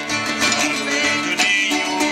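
Portuguese folk ensemble playing live: a piano accordion over strummed acoustic guitars keeping a steady rhythm.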